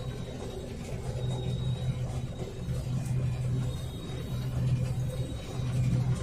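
New Holland TX66 combine harvester running while harvesting wheat: a steady low drone of engine and threshing machinery, swelling a little now and then.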